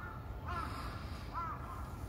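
A bird calling outdoors: two short calls about a second apart, over a steady low rumble.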